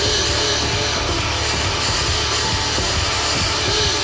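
Live rock concert music: electronic drum sounds played by striking trigger pads built into the drummer's vest, with short tones that rise and fall in pitch, repeating, over a steady low bass.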